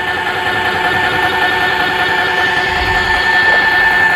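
Electric lift motor of a Glide 'n Go XR power seat lift lowering the occupied seat, with a steady whine.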